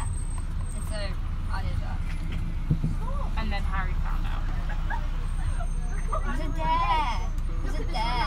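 Steady low rumble of a VDL Bova Futura coach's engine and running gear, heard from inside the passenger cabin as it drives, with passengers' voices talking over it. A single knock comes about three seconds in.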